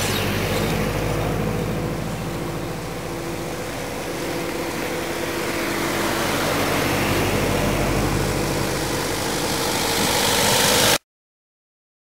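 Slow-moving cars, Subaru Imprezas, and a van driving past close by, a steady engine hum that grows louder towards the end and then cuts off suddenly.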